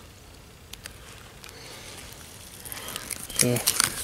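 Hands handling and pulling apart a block of ballistics gel: faint wet squishing with a few small sharp ticks, followed by a man's voice near the end.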